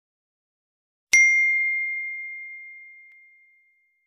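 A single bell-like ding, struck about a second in, ringing on one clear high tone that slowly fades away over about two and a half seconds.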